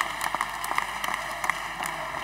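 Applause from members of parliament, many hands clapping at once in a dense, irregular patter that interrupts the speaker.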